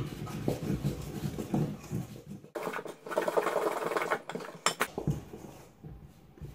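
Metal spoon stirring flour and oil in a stainless steel mixing bowl: quick, repeated scraping strokes of the spoon against the bowl, with sharp clinks here and there.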